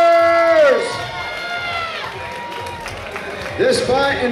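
A voice over the hall's PA holds one long drawn-out note in the ring announcer's style, which falls away a little under a second in, leaving crowd noise in the arena.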